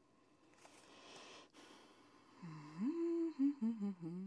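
A woman humming a few wordless notes in the second half, her pitch gliding up, holding, then stepping down. Before that comes a soft rustle of tarot cards being handled.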